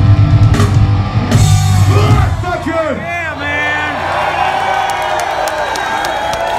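A live punk rock band (guitars, bass and drums) plays the end of a song, which stops about two seconds in. The crowd then cheers, whoops and shouts.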